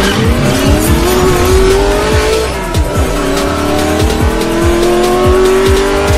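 A race car engine accelerating hard, its pitch climbing, dropping once at a gear change near the middle, then climbing again, over electronic music with a steady beat.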